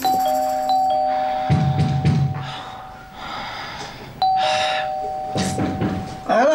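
Electronic two-tone doorbell chime, a ding-dong, rung twice about four seconds apart, each pair of tones ringing on for a couple of seconds.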